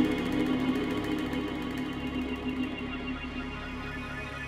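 Background music score of sustained, held notes, slowly getting quieter.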